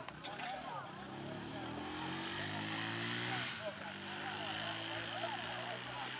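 A motorcycle engine running past, its note climbing for a couple of seconds, then dropping and running on lower, under the chatter of a crowd of voices.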